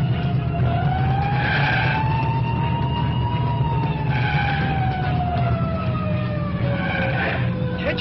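Car engine running hard under a siren that slowly rises and then falls in pitch, with short higher-pitched bursts about every three seconds.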